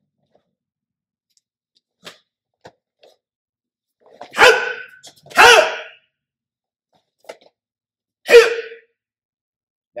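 Three sharp kihap shouts from a martial artist performing a staff form: two about a second apart a little past four seconds in, and a third near the end. A few faint taps come between them.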